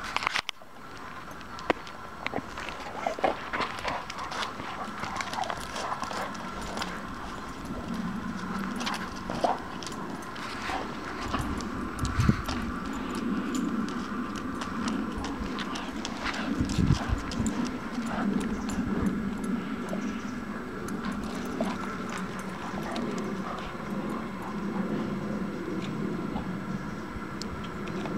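Dogs' claws clicking and scuffing irregularly on asphalt as two dogs move about and play, over a steady faint background hum.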